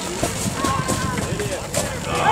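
Indistinct chatter of spectators, with a few short knocks scattered through it.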